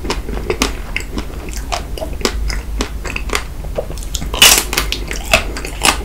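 Close-miked biting and chewing of a white-chocolate-coated Magnum ice cream bar: its thin chocolate shell cracks in a run of sharp clicks. The loudest crunch comes about four and a half seconds in.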